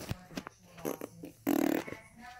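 Handling noise from a phone camera held in the hand: light knocks and clicks from fingers on the phone, then a loud brief rustle as a finger rubs across the microphone about one and a half seconds in.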